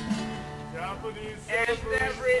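Acoustic guitar strummed, its chord ringing on in sustained low notes.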